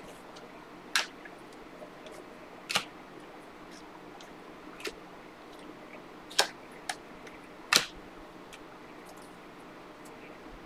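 Glossy Panini Prizm basketball cards handled in the hands: about six short, sharp clicks and snaps scattered through the pause as cards are slid off the top of the stack and flicked over, over a faint room hum.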